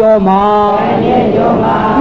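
Buddhist chanting by male voices: long, drawn-out sung syllables that glide slowly in pitch and run on without a pause.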